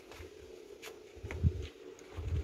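Sheets of heat-transfer lettering being handled and shuffled, with faint rubbing and a few light clicks, and low thumps of the hand-held phone being moved about a second in, over a steady faint hum.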